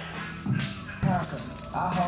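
Indistinct voices over steady background music.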